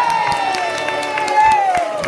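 Audience clapping and cheering as a song ends, under one long final sung note that slides slowly downward.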